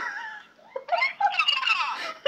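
A woman laughing: a laugh fades out, there is a brief pause, then higher-pitched laughter starts again a little under a second in.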